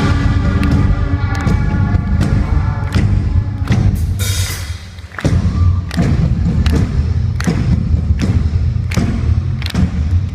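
Loud live rock band on stage, with drum hits about twice a second over heavy bass. The music drops away briefly about halfway through, then resumes.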